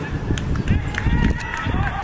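Footballers calling out to each other on an open pitch, over a steady low rumble, with a few sharp knocks.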